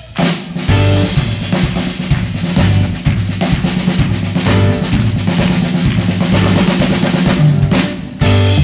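Drum kit played hard and busily with snare, bass drum and cymbals as the band plays, with bass notes underneath; the drums are the loudest part.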